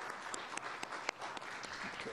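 A room full of people applauding: a dense, even patter of many hands clapping, greeting the on-time shutdown of the rocket's second-stage engine.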